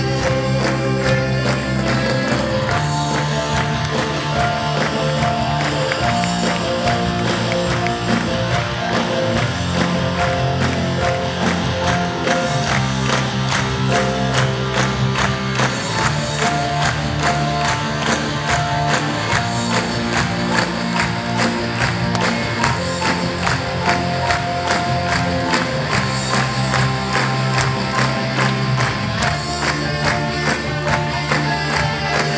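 Live band playing music with a steady beat that runs without a break.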